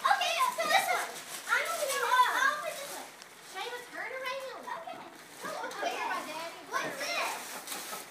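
Lively overlapping chatter of children and adults, with excited exclamations that come and go throughout.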